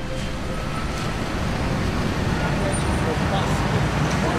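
Steady street traffic noise from passing cars.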